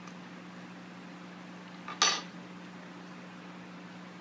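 A metal spoon set down, giving a single sharp clink about halfway through, over a steady low hum of room noise.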